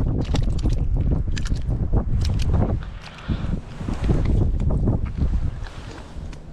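Strong wind buffeting the microphone, a heavy low rumble, with scattered short clicks and knocks from handling.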